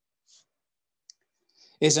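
Near-silent pause between a man's sentences, with a faint breath, a single small click, then another breath just before he starts speaking near the end.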